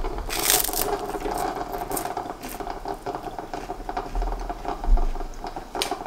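A crunchy bite into a puffed rice cake about half a second in, then chewing with small crackles and another sharp crunch near the end. A faint steady hum runs underneath.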